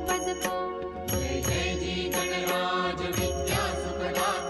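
Devotional aarti to Ganesh: voices chanting and singing over ringing bells and cymbals struck on a steady beat.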